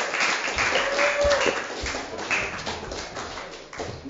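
Small audience applauding, dense clapping that fades and thins out toward the end.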